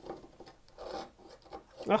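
Brass-backed dovetail saw cutting by hand into a board held upright in a vise: several short, soft rasping strokes as the saw works corner to corner across the angled cut.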